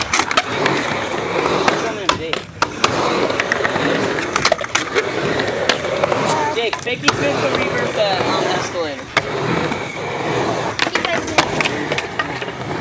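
Urethane skateboard wheels rolling on a concrete ramp, with sharp clacks of the board and trucks hitting the coping and surface several times along the way.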